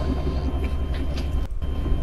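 Steady low rumble of street background noise, of the kind a vehicle idling nearby makes, recorded on a phone. There is a brief dropout about one and a half seconds in.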